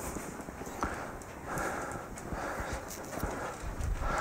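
Footsteps of a man walking across a platform: a run of soft, irregular thuds.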